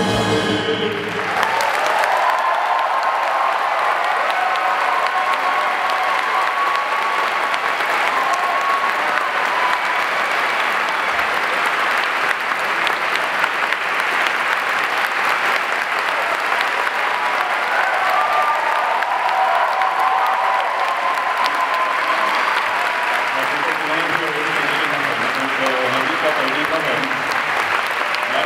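A symphony orchestra's final chord ends about a second in, followed by sustained audience applause in a concert hall. A man's voice speaking over the hall's microphone comes in over the clapping near the end.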